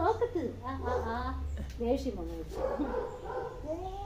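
A Rottweiler vocalizing in a string of short, wavering calls while being petted, mixed with a woman's voice. A steady low hum runs under the first half.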